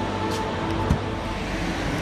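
Car traffic on a town street: a steady wash of engine and tyre noise with a low rumble.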